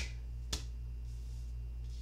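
Tarot cards being handled on a cloth-covered table: a faint click at the start and a sharper, short click about half a second in, over a steady low hum.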